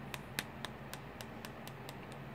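A quick series of light clicks, about four a second, from the buttons of a small RGB LED remote control being pressed over and over to speed up the lighting effect. A steady low hum from the running PC sits underneath.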